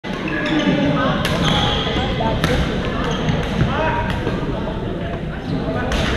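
Badminton being played in a large gym hall. Sharp racket-on-shuttlecock hits come about a second in and again a second later, and once more near the end, each ringing on in the hall. Sneakers squeak on the court floor over a steady background of voices.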